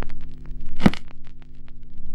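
Worn-film soundtrack effect: a steady low hum with irregular crackles and pops, and one loud crack a little under a second in.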